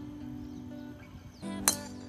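A driver striking a teed golf ball: one sharp crack about one and a half seconds in, over steady background music.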